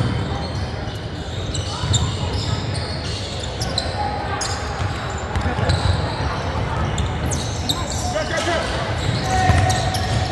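Basketball dribbled on a hardwood gym floor, with sneakers squeaking and scattered voices of players and onlookers, all echoing in a large hall.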